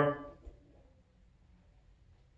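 A man's spoken word trailing off at the very start, then near silence: quiet room tone with a faint low hum and one soft click about half a second in.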